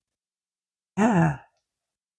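A woman's brief, breathy wordless vocal sound about a second in, its pitch rising then falling. The rest is silent.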